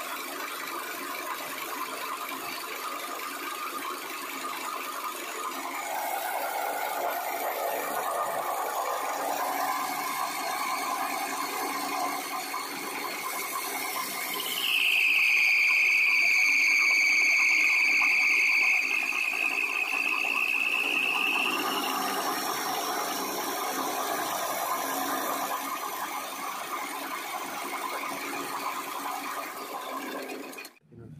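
Belt-driven grinding mill on a chaff cutter, run by an electric motor, grinding material to a fine powder with a steady running noise. Midway a loud high squeal comes in and holds for about seven seconds, dipping slightly in pitch and rising again, before the steady grinding noise goes on.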